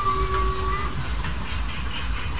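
Funfair ambience: a low, steady rumble with a held high tone over it that stops about a second in.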